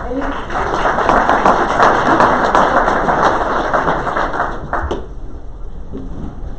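Audience applauding, a dense patter of clapping that dies away about five seconds in.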